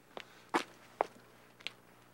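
Footsteps of a person walking up: about four short, uneven steps.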